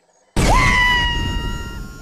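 Speeder-bike sound effect for a take-off at full throttle: a sudden blast about a third of a second in, with a high tone that rises quickly and then holds while the rumble slowly fades.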